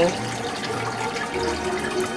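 Steady sound of running water in a home aquarium, as from the tank's filter: an even, continuous hiss.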